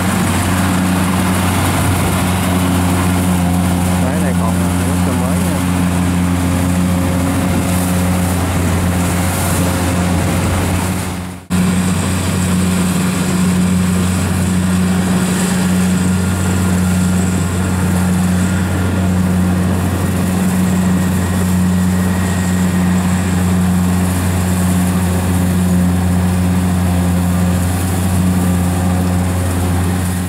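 Kubota combine harvester's diesel engine running steadily under load while it cuts rice, a constant drone that breaks off briefly about eleven seconds in.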